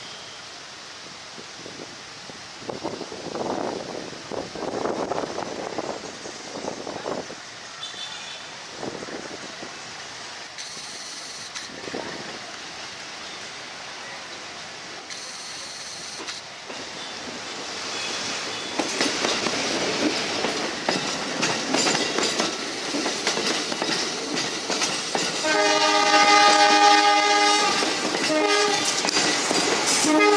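CC 203 diesel-electric locomotive hauling a freight train toward the listener, its rumble and wheel clatter growing louder. About 25 seconds in, its horn sounds loud and long as a multi-tone chord, the driver playing it.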